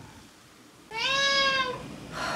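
A domestic cat meowing once, a single drawn-out call just under a second long that rises slightly and then falls in pitch.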